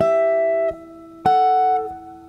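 Electric guitar playing sixth intervals in G, two strings plucked together for each interval. Two such pairs sound, one at the start and a slightly higher one a little over a second in, each ringing briefly before it is damped.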